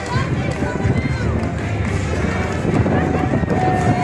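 Street crowd of spectators chattering, with many voices overlapping and faint music behind. A steady high note comes in near the end.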